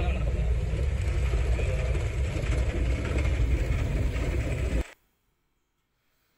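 Steady driving noise from inside a car's cabin on a wet, waterlogged road: a loud low rumble of engine and tyres on water. It cuts off suddenly about five seconds in.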